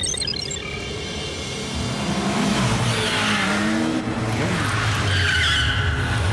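Cartoon motorcycle sound effects: engines rising as the bikes race in, then skidding to a stop, over background music. A short sparkling chime of the scene transition comes right at the start.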